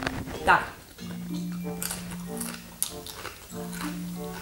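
Light background music with steady held notes. A few short, sharp crackles sound in the middle, typical of crunching potato chips in the mouth.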